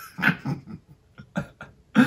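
A few short, breathy bursts of a person's laughter, broken by brief gaps.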